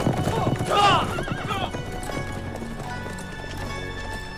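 Several horses galloping past, a rapid clatter of hoofbeats on a dirt road with a horse whinnying about a second in. The hoofbeats fade out by about two seconds in, leaving background music with long held notes.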